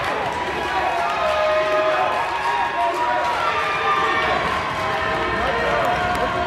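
Live sound of a basketball game in a gymnasium: many overlapping voices of players and spectators calling out, with players' shoes running on the hardwood court.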